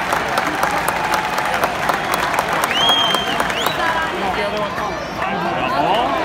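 Ballpark crowd noise: many voices talking and calling out at once, with scattered clapping. A high whistle cuts through briefly about halfway through.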